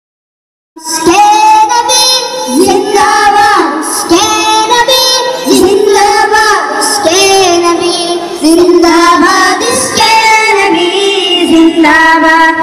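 A song sung over music, starting suddenly just under a second in, the voice holding notes and sliding between them.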